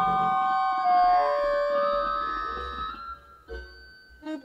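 Free-improvised music: long held, overlapping notes from saxophone and electronic wind instrument (EWI) with keyboard, slowly fading out past the middle, then a few short, scattered notes near the end.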